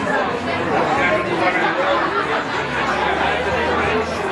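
Conversational chatter of many seated diners, several voices overlapping with no single clear speaker.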